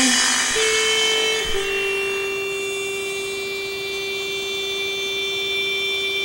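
A steady, sustained electronic tone: one held middle pitch with a fainter high whine above it, unchanging, with no beat or melody.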